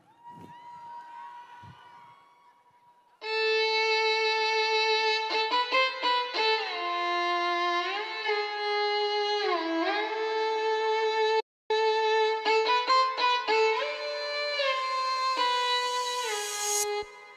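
Song intro music: a faint held tone for about three seconds, then a loud violin-like lead melody that slides between held notes. Near the middle a split-second dropout cuts all sound, and near the end a rising noise sweep builds up.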